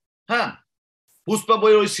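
A man's voice: a brief sound about a third of a second in, a pause, then he talks again from just past the middle.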